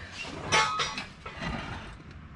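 Light metallic clinks and handling noise of metal car parts being touched and moved, with a short clink about half a second in.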